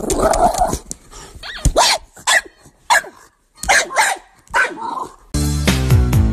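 A dog barking in a string of about six short, separate barks with gaps between them, then music with a steady beat coming in near the end.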